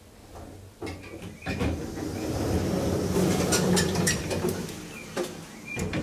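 Hydraulic elevator's automatic sliding doors opening: a few clicks, then a rumbling slide with rattling clicks that is loudest about three to four seconds in and then eases off.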